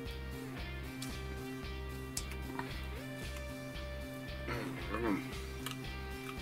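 Background music with a steady pulsing beat and held notes. About four and a half seconds in, a man's voice sounds briefly.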